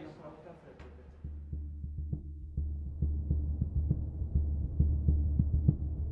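A low throbbing hum swells in about a second in and grows steadily louder, with light ticks over it.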